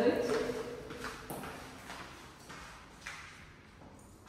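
Footsteps of heeled sandals clicking on a tiled floor, about two steps a second, growing fainter.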